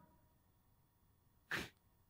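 Near silence broken by one short, sharp breath noise from the man at the microphone about one and a half seconds in.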